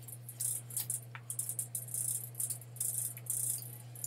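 Rapid typing on a computer keyboard: a quick, irregular run of crisp key clicks, over a steady low hum.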